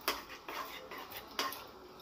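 Metal spatula clicking and scraping against a nonstick kadai while stirring yogurt into chicken gravy: a few sharp, irregular clicks.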